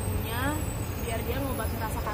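A woman talking, over a steady low background rumble.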